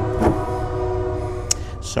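A train horn sounds a long, steady chord of several held tones, with one sharp click about one and a half seconds in.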